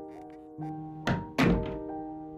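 Two heavy thuds about a third of a second apart, the second one louder, over soft piano music.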